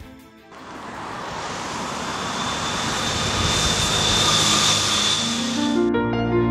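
Rush of noise swelling steadily for about five seconds, with a faint high whistle in it, then cutting off abruptly: a rising whoosh laid in as a transition effect between scenes.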